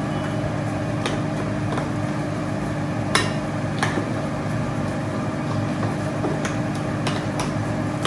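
A spoon stirring ground egusi and hot water into a paste in a bowl, clinking sharply against the bowl a few times, over a steady kitchen hum.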